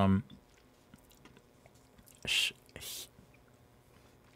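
A man voicing two short, breathy hissing consonants, the Norwegian 'skj' and 'kj' sounds, about half a second apart, just over two seconds in.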